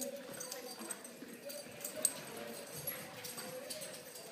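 A West Highland white terrier puppy and a Havanese puppy play-fighting: faint scuffling with scattered light clicks, and one sharper click about two seconds in.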